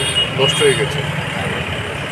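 Steady low hum of road traffic, with a vehicle engine running, under a man's voice heard briefly about half a second in.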